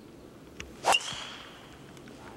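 Golf driver striking a teed ball on a full swing: one sharp, loud crack a little under a second in, followed by a brief high metallic ring.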